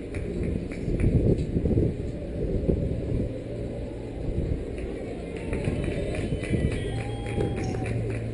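Outdoor race-course ambience: a steady low rumble with footsteps of athletes passing on pavement and faint, indistinct voices of spectators.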